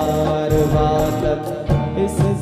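Live Hindi film song: a male singer holding sustained notes into a microphone over band accompaniment with steady bass.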